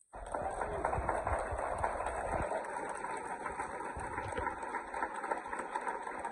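Audience applauding, a dense and steady clapping that starts just after a brief dropout at the very beginning.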